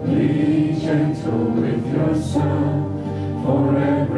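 Several voices singing a slow song together through microphones, holding long notes.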